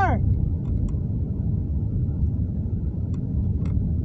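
Steady low rumble of a car being driven, heard from inside the cabin, with a few faint clicks. A man's shout of "Sir!" trails off at the very start.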